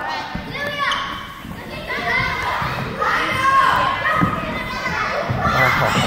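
A group of children calling out and chattering excitedly during an active game, their voices overlapping and echoing in a large gymnasium.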